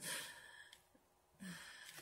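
A woman's frustrated sigh: a breathy exhale that fades within the first second, then a short low grunt about one and a half seconds in, while she struggles with a box that won't open.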